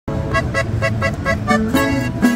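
Live band music starting abruptly: short repeated chords about four times a second over a bass line that steps upward near the end.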